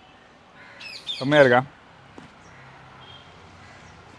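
A bird calls briefly about a second in, with a few high falling notes, overlapping the start of a short drawn-out man's voice that is the loudest sound.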